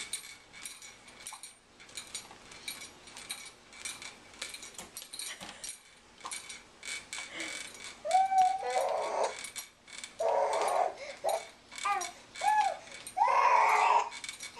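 Baby bouncing in a doorway jumper: a string of quick clicks and light rattles from the jumper and its dangling toy rattle. From about eight seconds in comes a run of short, high squeals and babbling from the baby.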